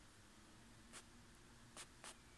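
Near silence in a small room, broken by two brief, soft scratchy rustles, one about a second in and one near the end.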